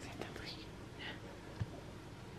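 Soft whispering in short breathy bursts, with one low thump late on.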